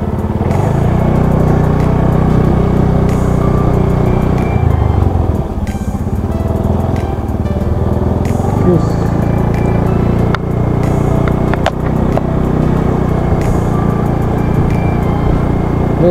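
Motorcycle engine running steadily as the bike rides along, heard close from the bike itself, easing off briefly twice.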